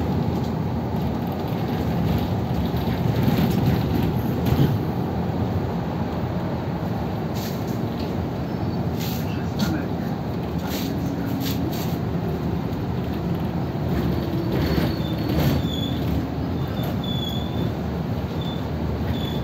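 Inside a moving city bus: a steady low rumble of engine and road noise, with scattered rattles and clicks. A faint high squeal comes in during the last few seconds.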